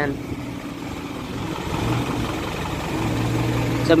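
A motor vehicle's engine running, its noise growing louder toward the middle, with a steady low hum in the last second.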